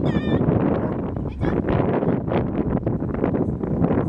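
A dog's short, high-pitched wavering yelp right at the start, over a steady rumble of wind on the microphone.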